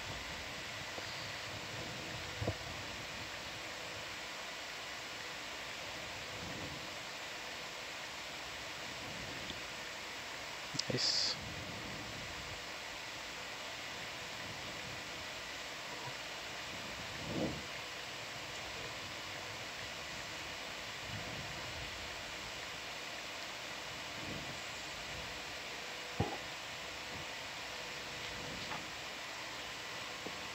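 Steady hiss of an open control-room microphone line, broken by a few short clicks and knocks, one of them sharper and higher about a third of the way in.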